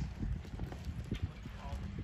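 Horse hooves thudding on soft arena dirt as a horse walks close by, a string of irregular soft steps.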